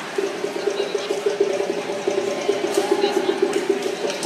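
Chatter of a gymnastics meet crowd in a large hall, with a steady, rapidly pulsing low tone that starts just after the beginning.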